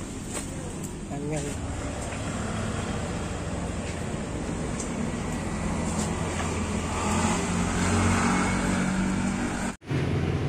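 Street traffic: a motor vehicle's engine running close by as a steady low rumble that grows louder about seven seconds in, with a brief voice about a second in. The sound cuts out abruptly just before the end.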